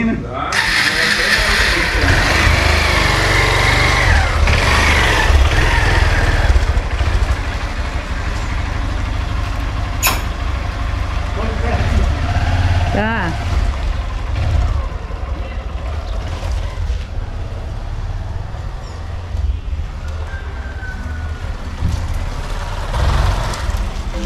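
Trail motorcycle engine starting about half a second in, then running as the bike pulls away and rides off, with a heavy low rumble under it.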